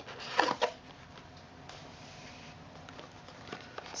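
Cardboard packaging being handled: a brief scrape about half a second in, then quiet room tone with faint rustles near the end.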